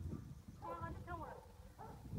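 Faint voices in short stretches, over a low rumble.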